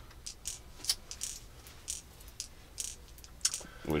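Steel .177 BBs being loaded into the magazine of an Umarex Beretta 92 CO2 BB pistol, rolling down and dropping in with a run of small, irregular metallic clicks and rattles.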